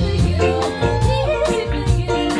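Live retro-pop band playing: a woman's lead vocal over upright bass, piano, guitar and drums, with a steady drum beat. About half a second in, her voice slides up into a note that she holds for about half a second.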